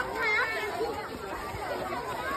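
Children's voices chattering: several short, high-pitched snatches of talk.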